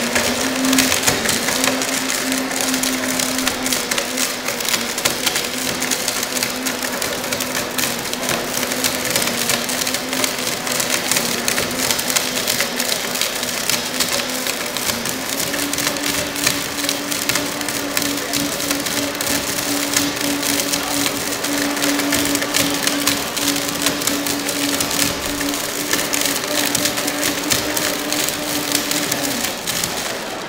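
Blendtec blender motor running at full power while grinding and crushing a hard object in the jar, a dense crackling and grating over a steady motor hum. The motor pitch steps up about halfway through, and the blender cuts off just before the end.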